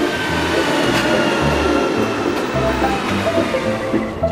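Background music with a steady beat, over the rushing noise and slowly falling whine of an electric commuter train (SL X60 type) pulling in past the platform.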